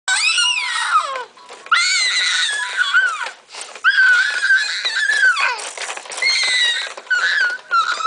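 A five-month-old baby shrieking: about five long, very high-pitched squeals that rise and fall in pitch, with short breaks between them.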